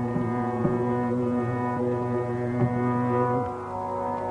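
Carnatic vocal music in raga Varali: low male voices hold one long, slightly wavering note over a steady tambura-style drone, the held note ending about three and a half seconds in.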